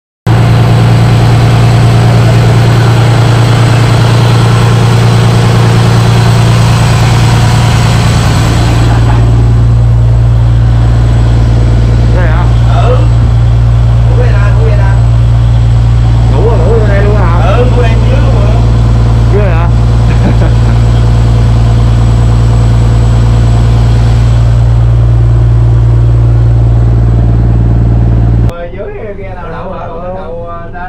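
Fishing trawler's engine running loudly and steadily with a deep, unchanging hum, heard close from inside the hull; faint voices come through it midway, and it cuts off suddenly near the end.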